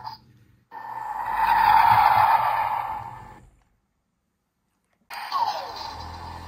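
Electronic spacecraft steering-wheel toy playing a whooshing rocket-thrust sound effect through its small speaker, swelling and then fading over about three seconds. After a silent gap, a brief falling electronic tone with a low hum comes near the end.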